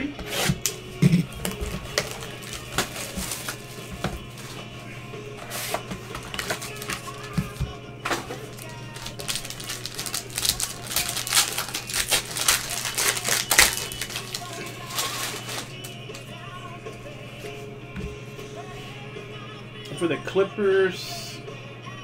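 Plastic shrink-wrap and a foil card pack crinkling and tearing as they are opened by hand, with a dense run of crackles in the middle, from about eight to sixteen seconds in.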